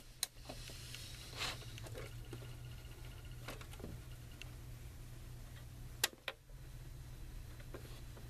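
A handful of separate small clicks and knocks from the controls of a GE 7-4545C clock radio being handled while its alarm is set. The sharpest click comes about six seconds in, over a steady low hum.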